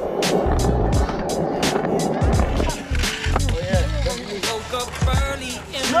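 Skateboard wheels rolling over rough concrete for the first two and a half seconds or so, under background music with a steady beat and a voice.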